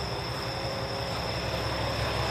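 Steady low rumble of a diesel train idling at the station, with a steady high chirring of insects over it.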